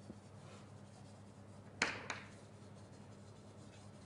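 Faint writing on a board, with two sharp taps about two seconds in.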